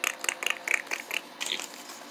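Crinkling and crackling of paper cutout puppets and plastic sheeting being handled: a quick run of short crackles that dies away about a second and a half in.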